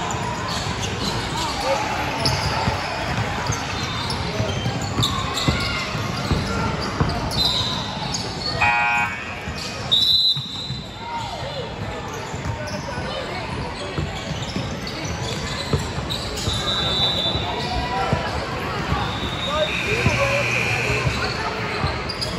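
Basketball game in a gym: a ball dribbling and bouncing on the hardwood, with players', coaches' and spectators' voices echoing in the hall. About ten seconds in, a short high whistle stops play, and the players then line up for free throws.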